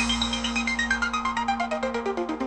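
Instrumental electronic music in a breakdown with the kick drum dropped out: a fast run of short synth notes stepping steadily down in pitch, over a held low note that stops near the end.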